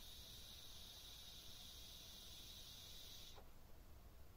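Faint steady hiss of air and vapour being drawn through a Joyetech RunAbout pod's 1.2 ohm atomizer during a long inhale, cutting off about three and a half seconds in.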